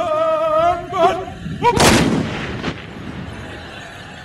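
A long, held shouted call from the charging horsemen. About two seconds in comes a single loud volley as the troupe fires its black-powder moukahla muskets together, followed by about a second of rumbling echo that fades.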